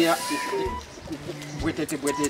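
Men's voices in conversation, with a bird calling in the background.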